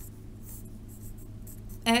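A pen writing on lined spiral-notebook paper in short, faint strokes over a low steady hum. A woman's voice starts right at the end.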